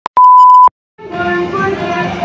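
Electronic beep: a very short blip, then a loud steady high beep lasting about half a second, cutting off abruptly. After a short gap, background music with sustained notes comes in about a second in.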